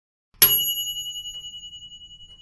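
A single bright bell ding sound effect: one high metallic strike about half a second in, ringing on and fading away slowly with a slight wavering pulse.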